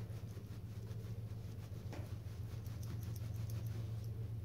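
Towel rubbing and patting over wet metal model train track: soft, faint cloth rustling with a few light ticks, over a steady low hum.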